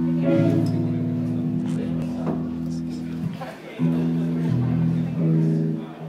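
Amplified electric guitar: a chord left ringing for about three and a half seconds, then a second held chord struck about four seconds in.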